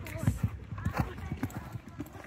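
Hoofbeats of a horse landing over a showjump and cantering on a sand arena surface, with a heavy thud about a quarter second in, then a run of softer irregular thuds.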